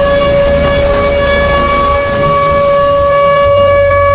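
Outdoor warning siren holding one steady tone, over a low rushing rumble of floodwater.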